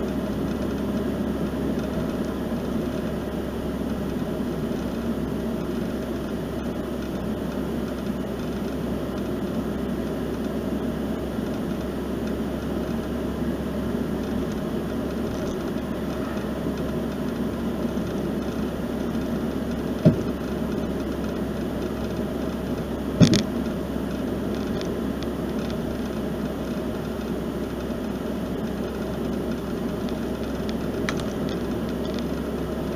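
Steady road and engine noise inside a moving car's cabin, with two sharp knocks about three seconds apart near the end.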